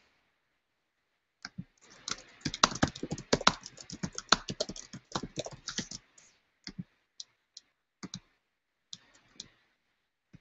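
Typing on a computer keyboard: a quick run of keystrokes for about four seconds, then a few scattered single key presses.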